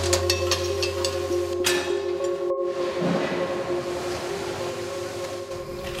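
Film-score music: a sustained chord of held tones, with sharp ticks and clicks in the first couple of seconds. The sound briefly cuts out about two and a half seconds in.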